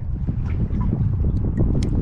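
Wind rumbling on the microphone over choppy water around a kayak, with a few small scattered clicks and taps.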